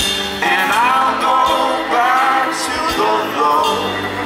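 Live folk-rock band playing: guitar, cello and fiddle under a melody line that glides up and down over the steady accompaniment.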